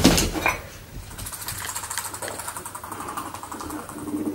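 Two guinea pigs scuffling in a cage as one lunges at the other in a dominance attack: a loud thump at the start, then steady rustling with a fast, fine rattle.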